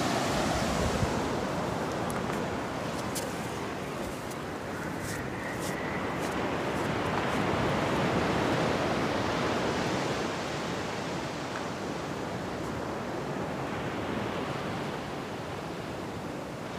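Ocean surf breaking and washing up a sandy beach: a steady rush of waves that swells louder around the middle and then eases off, with a few faint ticks in the first half.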